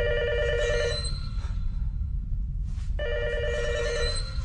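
Telephone ringing: two rings of a little over a second each, about three seconds apart, over a low steady rumble.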